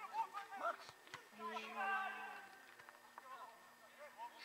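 Faint, distant voices of footballers and spectators calling out on an open pitch.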